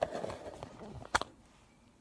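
Handling noise as the recording phone is moved and set in place: a soft rustle, then one sharp click a little over a second in.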